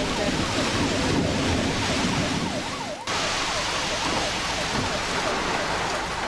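Emergency vehicle siren in a fast yelp, sweeping up and down about two to three times a second, over a steady rushing noise of rain and wind on the car.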